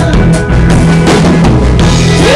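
Live band playing at full volume: a steady drum-kit beat with kick and snare over guitar and bass, in a passage without singing.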